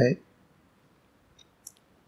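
A man's speech ends on a final syllable, followed by a quiet pause broken by two faint, short clicks about a second and a half in.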